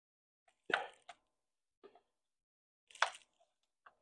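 A few short knocks and clunks from a chainsaw being handled on a wooden workbench. The two loudest come about a second in and about three seconds in, with lighter taps between.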